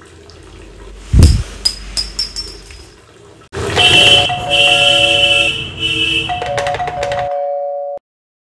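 A loud low thump with a ringing clatter about a second in, then an electronic doorbell chime playing a short tune of stepping notes, which cuts off suddenly near the end.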